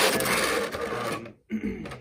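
Clear plastic clamshell packaging of an action-figure set rubbing and crinkling as it is handled, for about a second and a half, then stopping.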